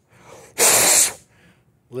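A hard puff of breath blown onto a wet plastic lighter to drive the water off it, one short gust of about half a second near the middle.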